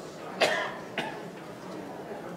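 An elderly man coughing twice behind his hand: a strong cough about half a second in, then a shorter one about a second in.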